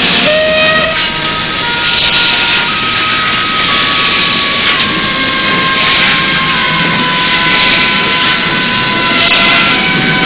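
Passenger train running along the track: a steady, loud rushing noise with hiss that swells every second or two, and faint held tones over it.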